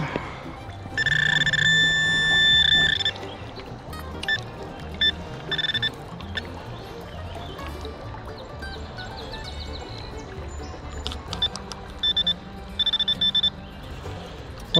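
Handheld metal-detecting pinpointer sounding a steady high electronic tone as it is probed through river gravel in a sifting scoop, signalling a metal target: one long tone of about two seconds a second in, a short one midway, then a string of short beeps near the end.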